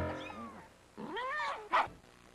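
A cat meowing once, one drawn-out call that rises and then falls in pitch, followed by a brief sharp sound just after it. A sung note fades away at the very start.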